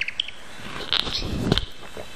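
A bird chirping: a quick high trill at the start, then a few short high chirps, over faint room tone, with a soft low knock about a second and a half in.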